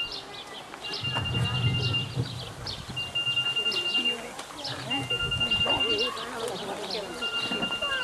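Birds chirping, with many short high falling calls, over a steady high beep about a second long that repeats roughly every two seconds, and a low murmur.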